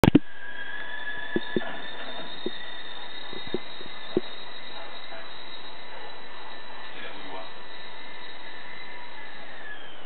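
Steady hiss with a high, steady electronic whine from a low-quality camera's own recording noise, the whine fading near the end. A few soft knocks fall in the first four seconds.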